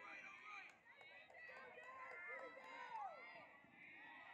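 Faint shouting from several voices at once on an outdoor lacrosse field, with calls overlapping and a few sharp clicks among them.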